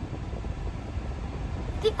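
Steady low rumble of a car's interior with the engine running, with a short spoken word near the end.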